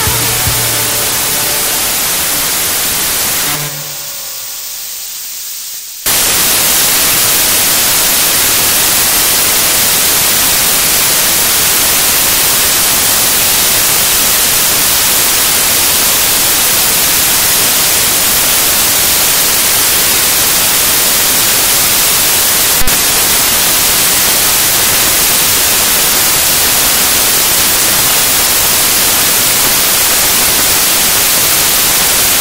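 A song fades out in the first few seconds. From about six seconds in, a loud, steady hiss of white noise like static fills the rest, with one sharp click about three-quarters of the way through.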